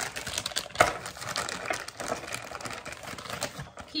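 Hands handling and rummaging through small hard parts: a dense run of quick clicks and rattles, with one sharper knock about a second in.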